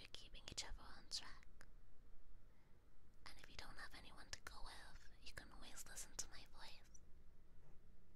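A woman's voice whispering close to the microphone in two phrases, with a pause of about a second and a half between them and a quieter stretch near the end.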